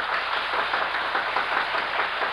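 Concert audience applauding as the music ends for the intermission: a steady, dense patter of many hands. It comes through the narrow, dull sound of an early-1950s radio transcription.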